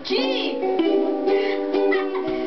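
A group of ukuleles strummed together in chords, played by beginners only minutes after getting the instruments.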